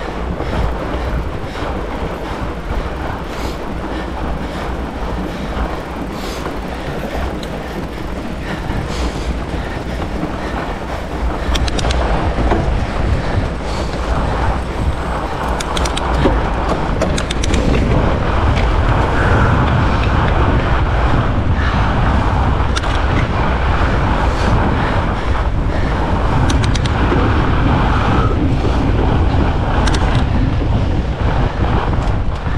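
Fat bike (2018 Salsa Mukluk Carbon) riding on a groomed snow trail: steady tyre and drivetrain noise with scattered rattles and clicks. Wind on the microphone grows louder about two-thirds of the way through as the bike picks up speed.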